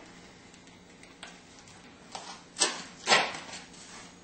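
A Philadelphia cream cheese package being opened by hand: a faint tick, then a few short rustling sounds in the second half, the loudest about three seconds in.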